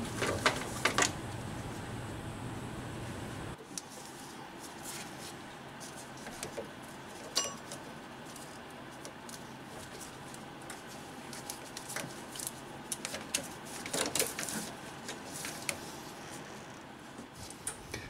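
Scattered clicks, knocks and metal clinks of a socket wrench and hands working a serpentine belt back onto the engine pulleys and tensioner, with one short ringing metal clink about seven seconds in.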